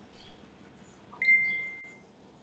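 A single high electronic chime, a ding, about a second in, holding one pitch and dying away over most of a second, like a computer or phone notification sound.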